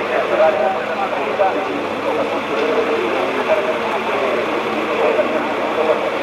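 GT race car engines running out of sight, a steady wavering drone, with voices mixed in.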